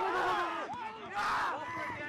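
Several sideline voices shouting and cheering over one another during open rugby play, with a louder burst of shouting about a second in.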